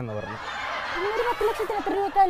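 A woman snickering and laughing: a breathy hiss of held-in laughter, then a run of short, choppy, higher-pitched laughs.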